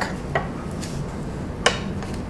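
Two light clicks as a Festool aluminium track-saw guide rail is slid by hand and set against a framing square: a faint one early and a sharper one near the end.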